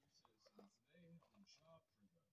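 Near silence, with faint whispered speech.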